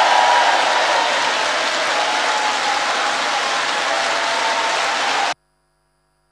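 A large conference audience applauding, a steady dense clapping that cuts off abruptly a little over five seconds in.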